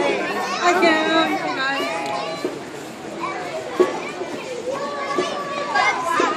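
Children's voices chattering and calling out from a group of young Cub Scouts walking past, busiest in the first couple of seconds.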